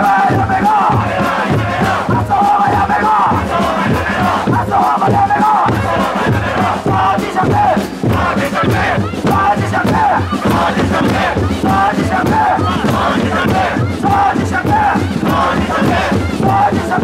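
Protest chanting: a leader shouting slogans into a microphone and the crowd chanting them back, over a steady beat of hand-held drums struck about twice a second.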